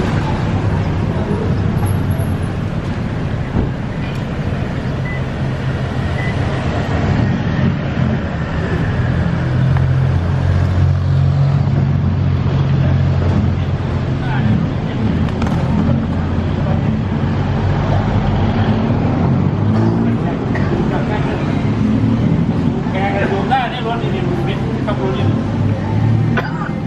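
City street traffic: a vehicle engine running steadily close by, with a low hum throughout, and passers-by talking, their voices clearer near the end.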